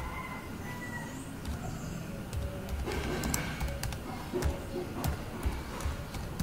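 Computer keyboard keys tapped in an irregular run of keystrokes, most of them in the second half, over faint background music.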